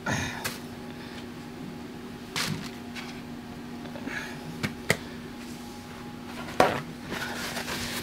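Faint rustles and light clicks from hands lifting leathery hatched python eggshells out of a plastic tub of loose substrate, over a steady low hum. A sharper knock comes late on.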